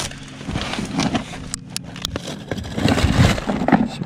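Plastic-wrapped produce and wet cardboard being rustled and knocked about while being handled, with a couple of sharp clicks about one and a half seconds in, over a low steady hum.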